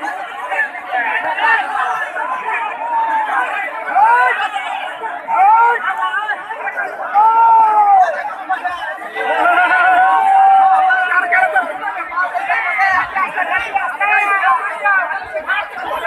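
Large crowd of men shouting and chattering, many voices overlapping, with several louder drawn-out shouts rising out of the din, the longest a bit over a second near the middle.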